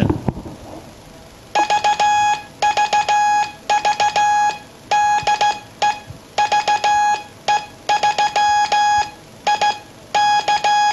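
Heathkit CO-1 code practice oscillator sounding Morse code through its small built-in speaker: a tone of about 840 Hz with many overtones, not a pure tone, keyed on and off by a hand key in dots and dashes, starting about a second and a half in.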